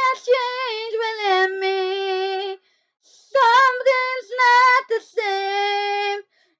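A young female voice singing solo, with no backing audible, in about three phrases, each ending on a long held note, with brief silent breaths between them.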